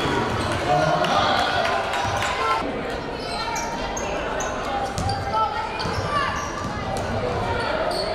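Live game sound in a gymnasium: a basketball bouncing on the hardwood court and short high sneaker squeaks, over indistinct crowd and player voices that echo in the hall.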